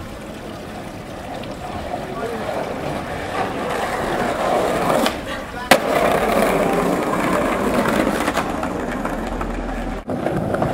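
Skateboard wheels rolling over stone paving, growing louder as the board comes closer, with a sharp clack of the board about halfway through.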